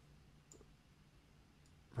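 Faint computer mouse clicks over near silence: one short click about half a second in and a fainter one near the end.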